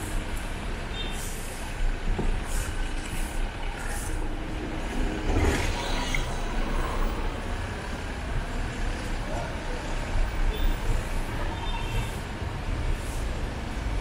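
City street traffic: a steady rumble of passing cars and other motor vehicles, with one vehicle passing louder about five to six seconds in.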